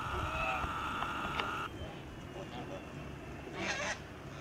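A Kholmogory goose gives one short honk near the end. Before that, a steady high tone runs and stops a little under halfway in.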